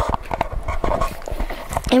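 Handling noise from a handheld microphone as it is passed from one child to another: a run of irregular knocks, taps and rubbing with a low thump, before speech starts at the very end.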